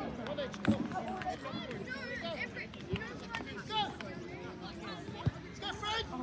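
Outdoor sports-ground ambience: scattered distant voices of players and spectators calling and shouting across the field, with a couple of short knocks.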